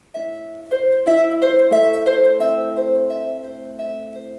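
Solo harp: plucked notes begin a moment in and ring on under one another, growing louder about a second in as a steady, moderate melody over held bass notes gets going.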